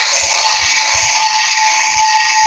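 Loud steady hiss with a thin steady tone running through it.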